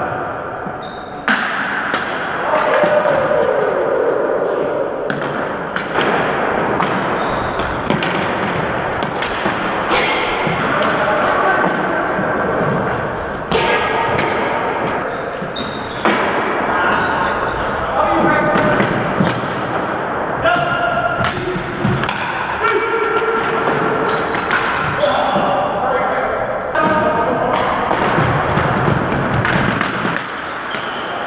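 Floor hockey in a gymnasium: repeated sharp clacks and thuds of plastic sticks and the ball hitting the hardwood floor and each other, echoing in the hall, with players' shouted calls.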